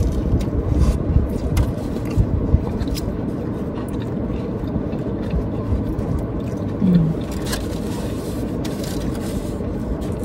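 Steady low running noise of a parked car heard from inside the cabin, with small clicks and scrapes of eating from foam takeout boxes, and a short low hum about seven seconds in.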